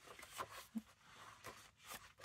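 Faint rustling and swishing of glossy paper pages as a large hardback book is leafed through by hand, in several short brushes.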